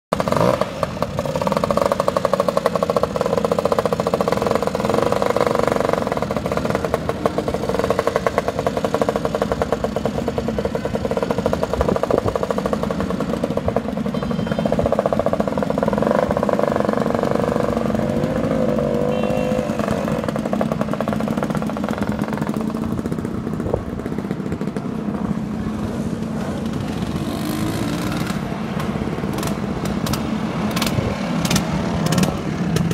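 A stream of vintage Vespa and Lambretta scooters riding past one after another, their small engines buzzing and revving as each one goes by, louder in two waves.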